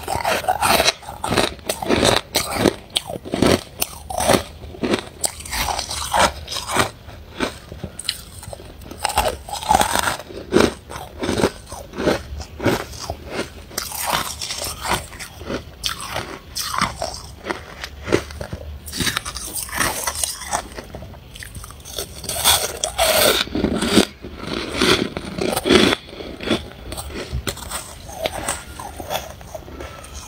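Freezer frost being bitten and chewed close to the microphone: a rapid, irregular run of crisp crunches, heavier around the middle and again towards the end.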